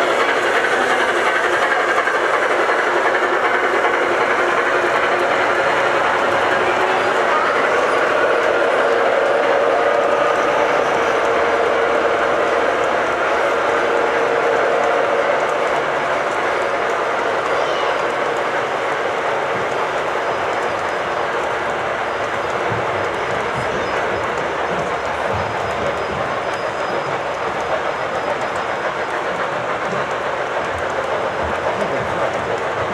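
O scale model passenger train running past close by: a steady rolling rumble of wheels on the track, a little louder in the first half.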